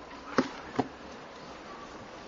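Two short, sharp clicks about half a second apart, near the start, over a steady background hiss.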